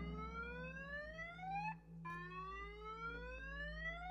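Car alarm sounding in slow rising whoops, each about two seconds long, with a brief break between them, over a steady low hum.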